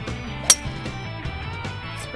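A metal-headed golf club strikes a teed-up ball once, about half a second in: a single sharp click. Guitar music plays throughout.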